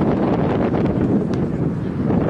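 Wind buffeting the microphone: a steady low rumble.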